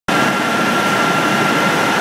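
Wenger X-20 feed extruder line running at full production: a steady machinery drone with a constant high whine over it.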